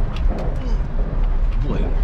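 A Ford Fiesta rolling slowly over a bumpy dirt track, heard from inside the cabin. The car gives a steady low rumble, with frequent short knocks and rattles as it goes over the bumps.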